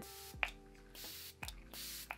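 e.l.f. Stay All Night Micro Fine Setting Mist pump spray misting onto a face: three short, quiet hissing sprays within two seconds, the fine mist of a setting spray.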